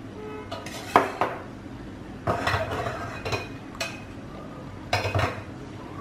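Perforated stainless-steel skimmer scooping grated beetroot out of a steel pot, clinking and scraping against the pot and the bowl: a string of sharp metallic knocks, the loudest about a second in.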